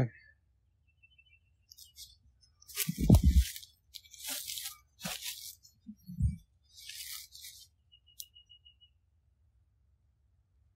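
Footsteps crunching through dry leaf litter: four rustling bursts, the loudest about three seconds in with a dull thump beneath, and another thump a few seconds later.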